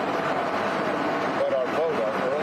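Loud, steady aircraft engine noise with a thin steady whine running through it, all but drowning a man's voice talking beneath it near the end.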